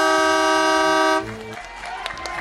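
Game-show time's-up buzzer: one loud, steady horn-like tone that stops a little over a second in, followed by a brief lower note.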